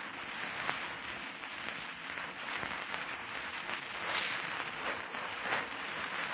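Steady crackle and hiss of an old radio transcription recording's surface noise, with a few faint clicks.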